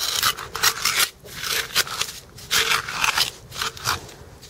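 Small metal hand trowel scraping and digging into gritty beach sand and gravel, an irregular run of short rasping strokes.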